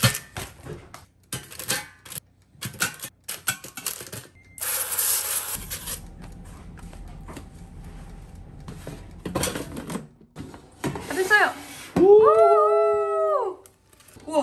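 Metal tongs clicking and clattering against an air fryer's basket as frozen dumplings are set in, a run of quick sharp clicks. Near the end comes a loud, drawn-out vocal call, rising at the start and held for about a second and a half.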